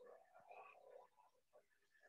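Near silence, with faint irregular background sounds.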